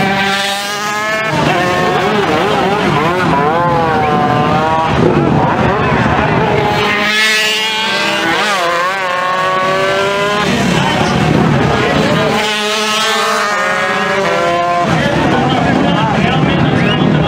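Racing motorcycles passing at speed, their engines revving high with pitch climbing and falling in about four surges as the bikes accelerate and shift.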